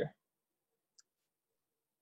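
Near silence on a noise-gated call line, broken once about a second in by a single faint, short, high click.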